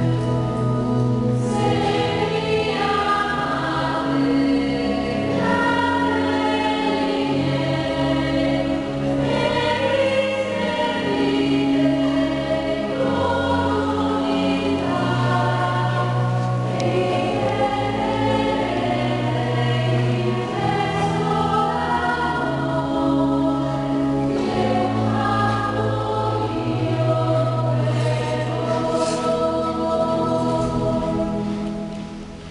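Church choir singing a slow hymn in sustained phrases over long held low notes.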